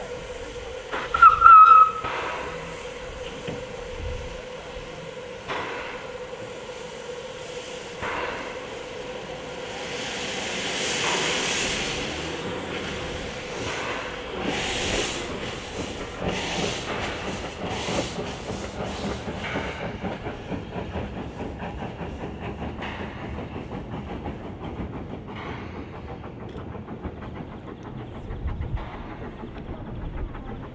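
Steam motor coach giving one short whistle blast about a second in, then hissing steam as it moves off, with the exhaust chuffs settling into a steady rhythm.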